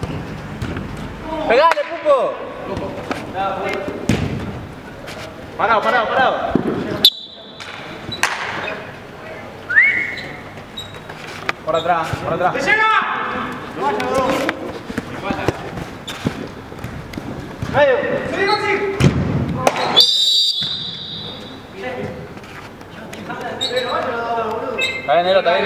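Indoor five-a-side football play: players shouting, the ball thudding off feet, and a short referee's whistle blast about twenty seconds in.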